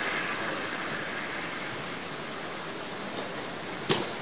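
Steady rushing background noise, with one sharp kick of a futsal ball near the end.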